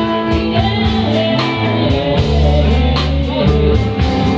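Live blues band playing: electric guitar over a steady bass line, with a drum kit keeping the beat on regular cymbal and drum hits.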